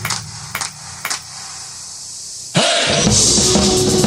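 Drum cover over a rock backing track: a quiet breakdown with three sharp hand claps in the first second or so, then about two and a half seconds in the drum kit and full band come back in loudly.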